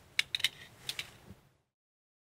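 A handful of faint, short clicks and taps of handling noise, then the sound cuts off to dead silence about one and a half seconds in.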